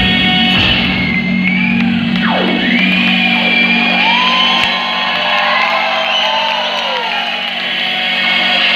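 A live band playing a sustained low drone, with high gliding, wailing lines curving up and down over it. A sharp downward swoop comes about two and a half seconds in.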